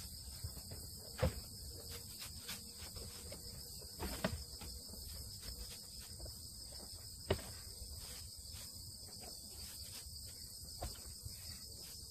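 Field insects trilling steadily at a high pitch, with a few sharp scrapes and knocks of a plastic rake working over dry ground and hay, the loudest a little over a second, about four seconds and about seven seconds in.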